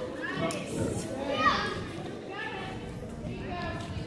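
Children's voices talking and calling out in a large hall, with one louder call about a second and a half in.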